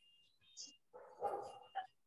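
Faint dog barking, picked up over a video-call microphone.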